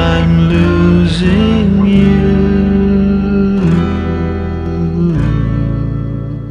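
Closing bars of a garage-rock song: guitar chords struck and left ringing, a new chord every second or so, easing off near the end.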